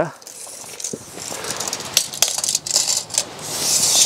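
Steel tape measure being pulled out, its metal blade making a run of small clicks and rattles, with a hiss that grows louder in the last second as the blade is drawn out further.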